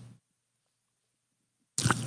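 Dead silence: the audio cuts out completely for about a second and a half between stretches of speech. No drinking sound is heard.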